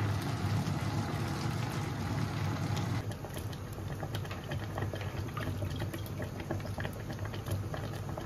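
Pots of food boiling on a stovetop: a pot of tomatoes and peppers boiling, then a pot of soup simmering with small pops and crackles, over a low steady hum. The texture changes about three seconds in.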